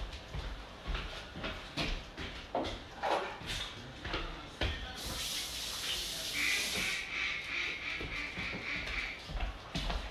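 Kitchen handling sounds: scattered knocks and clatter as plastic containers are handled and thrown away. About halfway through comes a sharp two-second hiss, then a faint steady high tone for a few seconds.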